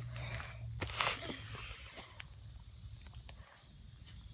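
Dry leaves and grass rustling close to the microphone, with a louder rustle about a second in and a few faint ticks after it, over a steady high drone of insects.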